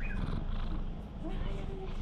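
Domestic cat purring steadily, a low pulsing rumble, while being scratched under the chin.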